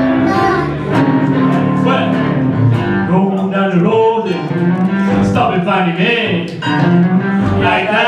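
Live blues band playing, with a sustained lead line that bends in pitch over keyboard and drums.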